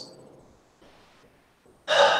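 A pause with near silence, then near the end a short, breathy vocal sound from a person, like a sharp breath or gasp, that fades within about half a second.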